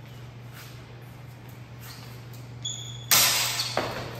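Steel training longswords meeting in a fencing exchange: a short ringing clink about two and a half seconds in, then a loud clash with a ringing decay a little after, and another sharp knock near the end. A steady low hum runs underneath.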